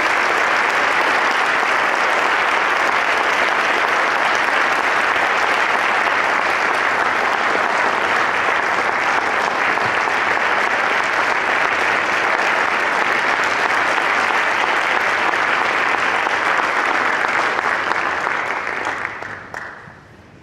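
Audience applauding, a steady dense clapping that dies away over the last couple of seconds.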